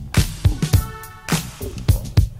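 Funk-flavoured hip-hop beat: a steady pattern of kick and snare drums over a bass line, with a brief held melodic note about a second in.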